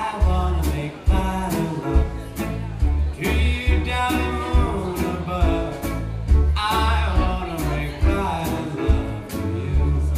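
Live band playing a blues number with electric guitars, piano, bass and drums on a steady beat of about two strokes a second. A male voice sings over it at times.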